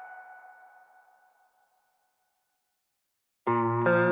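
Background music: the last notes of one track ring out and fade within about a second, then total silence, and a new track with sustained pitched notes starts abruptly about three and a half seconds in.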